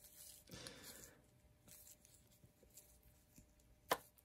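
Faint handling noise from an action figure in a cloth bodysuit: soft rustling and rubbing in the first second, a few small ticks, then one sharp click just before the end.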